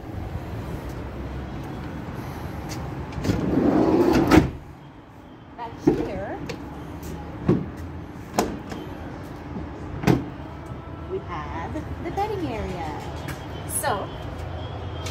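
Handling noise from the camper van's doors and wooden fittings: a loud rustling stretch that cuts off suddenly about four and a half seconds in, then four separate sharp knocks and clicks spaced a second or two apart.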